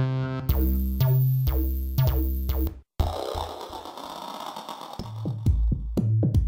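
Farbrausch V2 software synthesizer playing preset demos. For about the first three seconds a distorted synth lead repeats short notes in a rhythm. After a brief gap a noisy synth wash follows, and near the end a run of rapid, deep 808-style bass drum hits begins.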